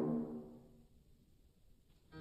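The orchestra's final loud chord rings out and dies away over about the first second, leaving a near-silent pause.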